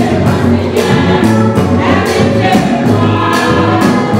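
Women's gospel choir singing together over a steady drum beat.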